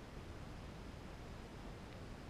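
Faint, steady noise from the balloon payload's camera: a low rumble under an even hiss, with no distinct events.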